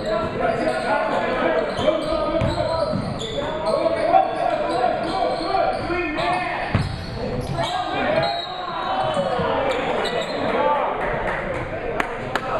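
Basketball game sounds in a gym: a basketball bouncing on the hardwood floor amid the calls of players and spectators, all echoing in the large hall.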